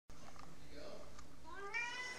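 Domestic cat meowing: a faint short call, then a drawn-out meow that rises in pitch near the end.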